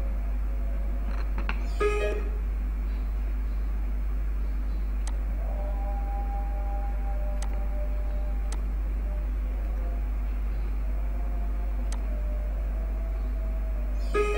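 Steady low hum with no speech. Faint held tones come and go over it, with a short brighter burst about two seconds in and a few thin clicks.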